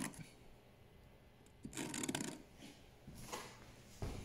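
Felt-tip marker drawing scribe marks on a plastic storage-box cover: two faint short scratchy strokes, the first a little under two seconds in and the second a little over three seconds in.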